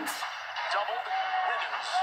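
NBA game broadcast audio: steady arena crowd noise under a commentator's voice.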